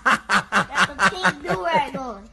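A person laughing hard in a quick run of short bursts, each one dropping in pitch, easing off near the end.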